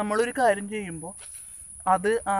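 Steady high-pitched drone of insects in the grass, with a man's voice talking over it for about the first second.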